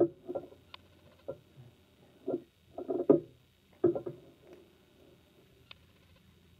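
Scissors cutting the stems of a bunch of silk roses, with handling noise from the flowers. There are about half a dozen separate snips and knocks, the loudest at the start and just before four seconds in, and a sharp click near the end.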